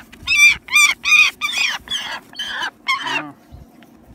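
A young bird of prey calling: a quick series of sharp, ringing cries, about two a second, which stops a little over three seconds in.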